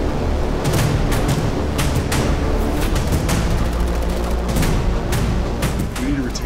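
Film-trailer battle mix: music over a dense rumble, with gunshots cracking at irregular intervals, some in quick bursts, and booms of explosions.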